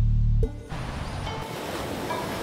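A loud deep bass drone cuts off about half a second in, giving way to a steady wash of ocean surf under soft background music.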